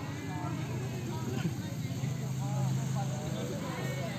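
Distant voices of players calling out across an open football pitch, with a steady low hum underneath that grows a little stronger in the second half.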